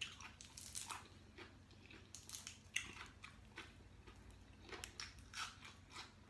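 Faint, irregular crunching and mouth sounds of a person chewing fresh raw greens and herbs, with scattered crisp crackles.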